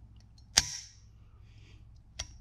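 Derya TM-22-18 rifle's trigger breaking in a dry-fire trigger-pull test: a single sharp metallic snap about half a second in, with a few faint ticks from the trigger before it.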